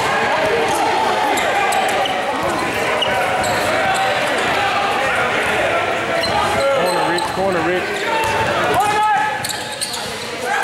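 A basketball bouncing on a hardwood gym court amid overlapping voices and shouts of players and onlookers, all echoing in a large gym.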